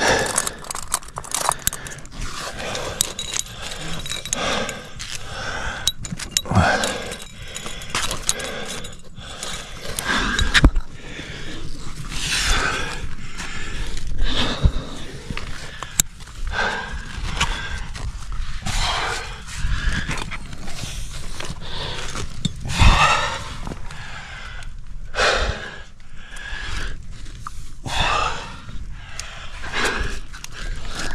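A lead climber's hard, heavy breathing and effort noises close to the helmet camera, a breath or grunt every second or two, with scattered clicks and scrapes of climbing gear and shoes on rock.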